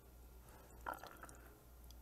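Near silence: room tone, with a faint short sound about a second in.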